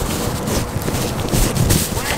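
Wind rumbling on a handheld camera's microphone, with irregular low thumps of footsteps on asphalt.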